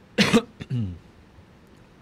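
A man coughs twice in quick succession into his fist, then gives a short throat-clearing grunt.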